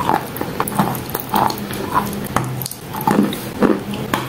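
Close-miked chewing of wet chalk: crunching and moist mouth sounds in a quick, irregular run of short crackles and smacks, over a steady low hum.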